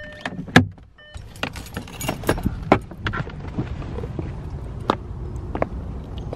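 Car door opened from inside: a sharp latch click about half a second in and a short warning beep, then scattered clicks and rustling as the door swings open and someone steps out onto pavement, over a steady low outdoor background.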